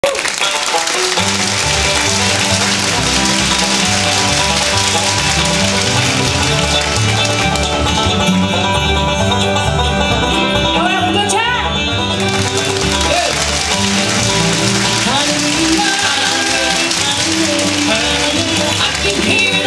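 Bluegrass band playing the opening of an up-tempo gospel song: banjo, mandolin, fiddle, dobro, upright bass and guitar, with sliding notes about ten to twelve seconds in.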